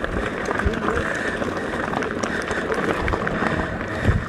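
Mountain bike riding over a dirt trail: tyres rolling on dirt with a steady rush and many quick clicks and rattles from the bike.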